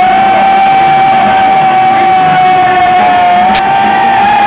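Heavy metal band playing live in an arena, one high note held steady for about three and a half seconds over the full band, with a slight dip near the end, heard loud and rough from the crowd.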